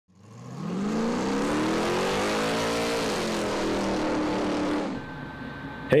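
A car engine revving. The pitch climbs for about two seconds, drops back, then the sound fades out about a second before the end.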